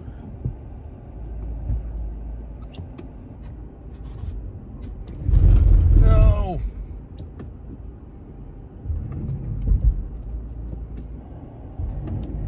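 Chrysler car's engine rumbling under load as it tries to climb a snow-covered driveway, with a much louder surge about five and a half to six and a half seconds in and another near ten seconds, heard from inside the cabin.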